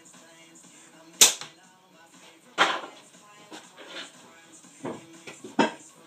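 A slingshot shot about a second in: one sharp, loud crack, followed by a few softer knocks, over background music.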